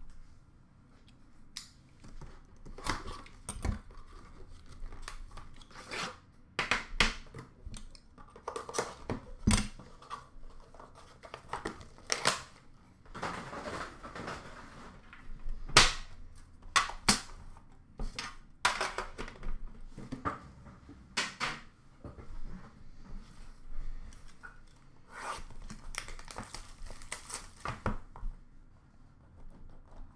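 Wrapping being torn and crinkled as a sealed box of Upper Deck The Cup hockey cards is opened, mixed with frequent sharp clicks and taps from handling the box and its contents. The longest stretch of tearing and rustling comes about halfway through.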